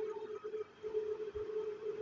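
Quiet room tone with a faint steady hum at one held pitch, which drops out briefly about half a second in.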